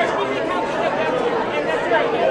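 Several voices talking over one another: photographers' chatter around a red carpet, with no clear words.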